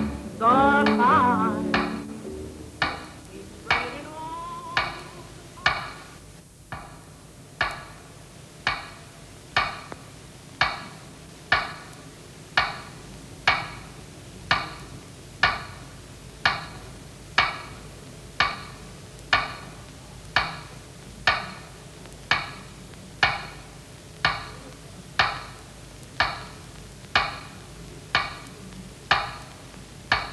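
Pendulum clock ticking steadily about once a second, each tick ringing briefly. The closing song with singing fades out over the first two seconds.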